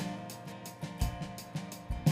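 Live worship band playing a song: drum kit with a kick drum about once a second under cymbal strokes, electric guitar and held chords.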